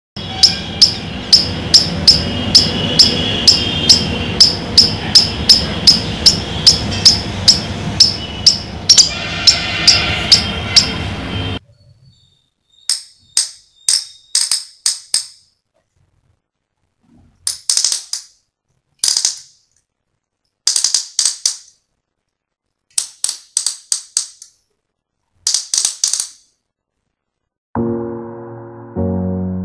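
A squirrel's call, sharp chirps repeated evenly about two and a half times a second over a steady background hiss, cuts off suddenly about 12 seconds in. Then a homemade squirrel-call gadget, a thread drawn over a garment button on a bottle cap, makes squeaky squirrel-like chirps in short clusters separated by silence.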